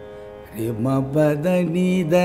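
A male Carnatic vocalist sings a short illustrative phrase of held notes stepping up and down in pitch, starting about half a second in. It is sung over a faint steady drone.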